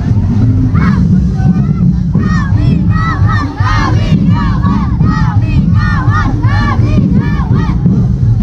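Massed dancers' shouts and war cries, many short rising-and-falling yells in quick succession from about two seconds in, over loud, dense street-dance drumming.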